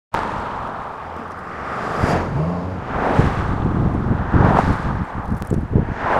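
Street traffic outdoors: a car going by over steady outdoor noise and low rumble, growing louder from about two seconds in.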